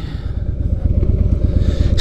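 Harley-Davidson V-twin motorcycle engine running at low revs with a steady rumble as the bike rolls slowly through a turn, heard from the rider's seat.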